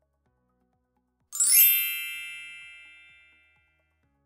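A single bright chime sound effect, a bell-like ding struck about a second in that rings out and fades over about two seconds.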